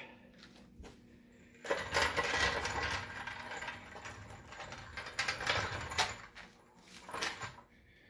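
Low-profile steel floor jack rolled across a concrete floor, its wheels and metal frame rattling and clicking for several seconds, from about one and a half seconds in; a sharp metallic click follows near the end.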